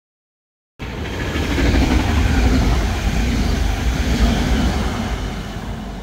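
A train passing: a loud low rumble with a noisy hiss over it. It cuts in suddenly about a second in, after silence, and slowly eases off.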